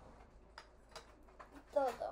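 A few faint, separate taps and clicks from a glass jar of marinara sauce being emptied into a bowl.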